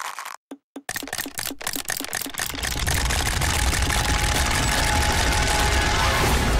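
Wind-up chattering teeth toys clacking: a few separate clicks at first, then rapid clicking that thickens into a dense clatter of many toys about two and a half seconds in, with a low rumble underneath.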